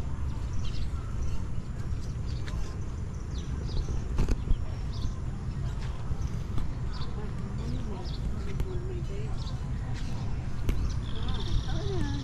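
Outdoor evening ambience: a steady low rumble with short high-pitched animal chirps, often in pairs, about once a second. About eleven seconds in, a longer buzzy high trill comes in.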